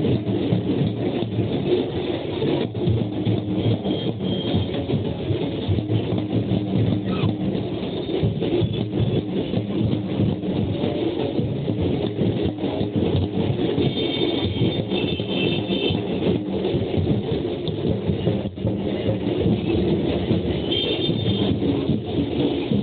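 Loud, steady street din of a procession, with drumming mixed with traffic noise, heard from a passing vehicle. A few short high tones sound about two thirds of the way in and again near the end.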